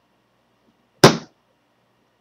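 A single sharp smack about a second in, fading within a third of a second.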